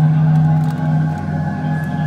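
Loud live metal concert music recorded from the audience: a low droning chord held steady, with a few higher tones sustained over it.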